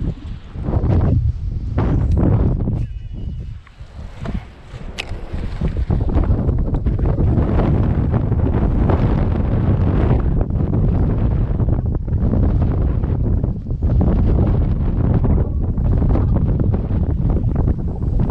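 Strong wind buffeting the microphone: a heavy low rumble that surges in gusts, easing briefly about three to four seconds in before coming back hard.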